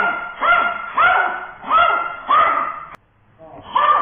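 A 12-year-old Maltese barking repeatedly, about five sharp barks in quick succession, at a person standing close to it: the dog barks on and on whenever someone stands or approaches. The sound cuts off abruptly about three seconds in, and one more bark comes near the end.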